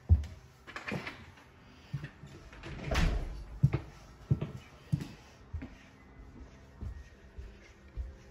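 Footsteps on a hardwood floor, soft thumps coming a little under a second apart, with a sharp knock right at the start and a brief rustling swell about three seconds in.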